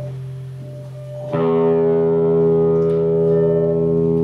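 Electric guitars holding steady, droning tones; about a second in a new note is struck sharply and rings on, rich in overtones.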